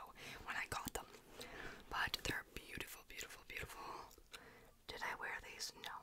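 Soft whispered speech close to a microphone, broken by scattered small clicks.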